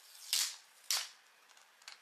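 Plastic wet-wipe pack lids clacking against one another and the wooden tabletop as one is set down on the pile: two sharp clicks about half a second apart.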